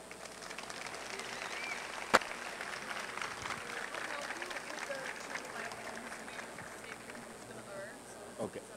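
Audience applause, a dense patter of clapping that tails off toward the end, with one sharp knock about two seconds in.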